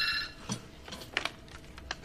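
A desk telephone rings briefly at the start with a short electronic trill, followed by a few faint clicks and knocks as the handset is picked up.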